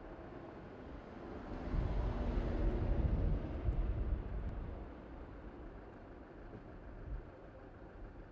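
A road vehicle passing: a low rumble that swells about a second and a half in, peaks around three seconds and fades out by about five seconds, over steady outdoor background noise.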